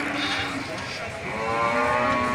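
A livestock animal giving one long, drawn-out call, starting about halfway through.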